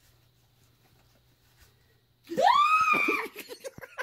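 Near silence, then a little over two seconds in a woman lets out a loud, high-pitched squeal that rises and holds for about a second, followed by short gasping sounds: an emotional reaction of surprise.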